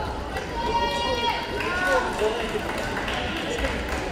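Indistinct voices of people talking in a large sports hall.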